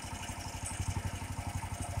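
DuroMax XP18HPE 18 hp single-cylinder engine on a Bearcat SC-3206 chipper shredder, running steadily with an even, rapid beat and no wood being fed.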